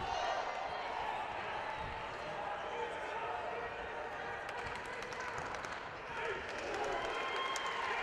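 Crowd noise in a wrestling gym: steady background chatter with scattered shouting voices and faint thumps from wrestlers scrambling on the mat.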